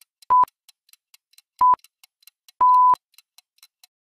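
Countdown timer sound effect: faint quick ticking, about four ticks a second, with a high electronic beep roughly once a second. The third beep near the end is held longer, marking time up.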